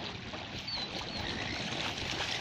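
Steady sloshing and splashing of lake water as a Labrador paddles through it and comes up wading in the shallows.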